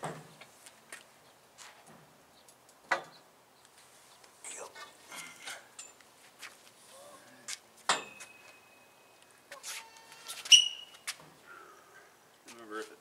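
Several sharp metal clanks from a long steel cheater pipe and socket being fitted to a hydraulic cylinder's rod bolt, one of them ringing on for over a second and the loudest, ringing strike coming near the end.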